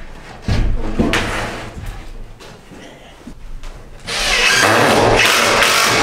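An OSB sheet thumps down onto a wooden 2x4 desk frame about half a second in. Near the end comes a steady rasping noise lasting about two seconds, loud and even.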